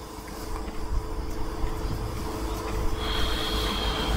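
A man breathing close to a clip-on microphone, heard as low rumbling noise that slowly grows louder, over a faint steady hum. A thin high tone comes in about three seconds in.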